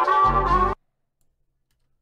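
A sampled music loop playing back through a lo-fi effect plugin, cutting off abruptly under a second in as playback is stopped, followed by near silence.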